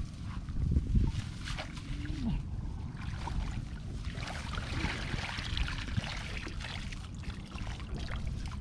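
Water sloshing and splashing with branches and leaves rustling as a person wades and reaches by hand through flooded brush. A couple of low thumps come about a second in.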